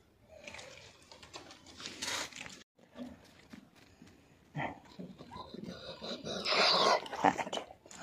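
A dog making sounds close to the microphone: a brief sound about four and a half seconds in, then a louder, noisier stretch lasting about a second near the end.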